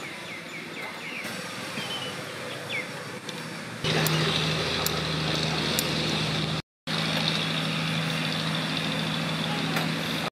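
A steady mechanical hum with a low drone cuts in abruptly about four seconds in and drops out briefly near the middle. Before it there is quieter background with a few short chirps.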